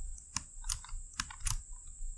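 Quiet computer mouse clicks and keyboard keystrokes: about five sharp, separate clicks over two seconds as edges are clicked and Ctrl+Z is pressed.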